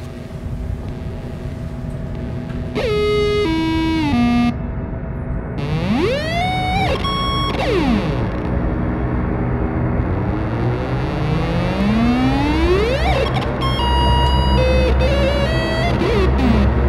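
Electronic synthesizer music with sci-fi sound effects: a stepped run of falling tones, then rising pitch sweeps, then a low rumble under more stepped tones near the end.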